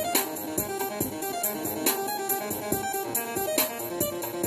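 Music played on a Korg keyboard: a line of short notes over a steady drum beat.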